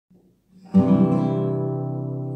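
Nylon-string classical guitar: one chord strummed about three-quarters of a second in and left to ring, slowly fading.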